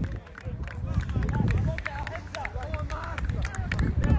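Faint voices of players talking and calling across an open football pitch, with a low wind rumble on the phone's microphone.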